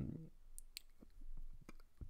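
The end of a drawn-out spoken "um", then several faint, isolated clicks over the next second and a half.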